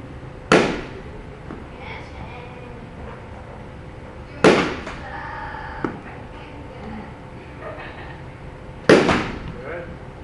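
A bat striking a pitched ball three times, about four seconds apart, each a sharp crack with a short ringing tail.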